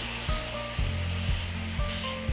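Lamb pieces sizzling as they fry in a hot pan while being stirred with a silicone spatula.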